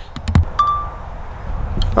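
A few clicks and a low thump, then a short single-pitched electronic beep from the DJI drone gear as it is shut down after landing, over wind rumble on the microphone.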